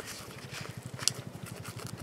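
Aluminium tent stakes being worked out of a tight nylon pouch: faint rustling of the fabric, with one sharp click of stake on stake about a second in.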